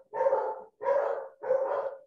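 A dog barking over a video-call microphone: three barks in a row, a little over half a second apart.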